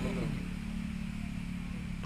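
A steady low motor hum, with a brief voice sound at the very start.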